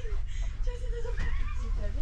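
Passengers' voices talking in the carriage over the steady low rumble of the train.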